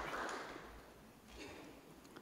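Audience applause fading out over about the first second.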